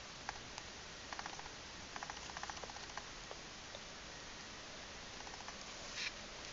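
Rabbit nibbling a small hard treat held in a hand: faint, rapid crunching ticks in short runs, about a second in and again between two and three seconds, with scattered single clicks.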